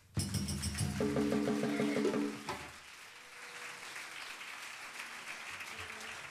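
Dundun bass drum played in a quick run of strokes for about two and a half seconds, then audience applause.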